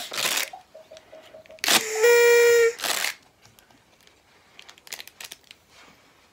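Paper party blower blown: a flat, steady, reedy note about two seconds in that lasts about a second and is the loudest sound, after a faint short toot a second earlier. A laugh at the very start.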